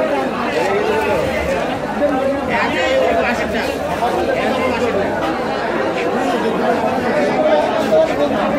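Crowd of vendors and shoppers in a busy market, many voices talking over one another in a steady din of chatter.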